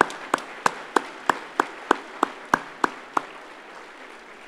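Audience applauding, with one person's hand claps close to the microphone, about three a second, stopping a little after three seconds in as the applause fades.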